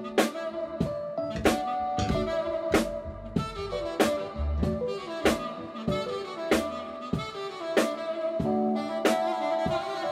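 Jazz band playing: a saxophone carries the melody in held notes over electric bass, a Roland keyboard and a drum kit keeping a steady beat, with a drum hit about every second and a quarter.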